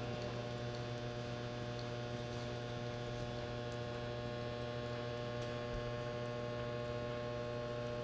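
Steady electrical mains hum: an unchanging low buzz with a stack of even overtones.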